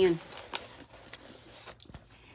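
Quiet room tone with a few faint, sharp clicks and soft rustles, spaced irregularly; the tail of a spoken word is heard at the very start.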